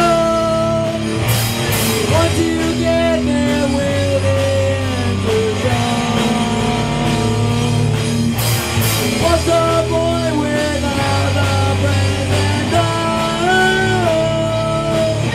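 Rock band playing live: a lead vocalist singing over electric guitars and drums, with cymbal crashes about a second in and again past the middle.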